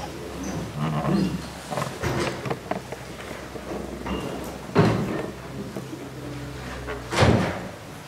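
Quiet ambience of a large council hall while the votes are counted: faint murmur and rustling over a steady low hum, with two short knocks, the first about five seconds in and the second near the end.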